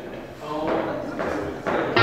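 Indistinct talk in a large hall, with a few stray pitched notes from the band's instruments.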